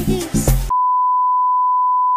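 Beat-driven dance music cuts off abruptly under a second in. It is replaced by a steady, loud, single-pitch 1 kHz test-tone beep of the kind that goes with a 'no signal' test card.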